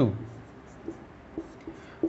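Marker pen writing on paper: a few faint, short scratches and taps as a short heading is written and underlined.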